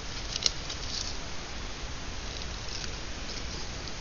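Scissors cutting a piece of mesh fabric, quiet, with one sharp click about half a second in and faint rustling of the material.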